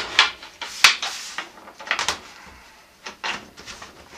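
A handful of sharp knocks and clacks as the panels of a homemade breakaway soap mold and metal lag bolts are handled and set against a stainless steel table, with quieter rubbing between them.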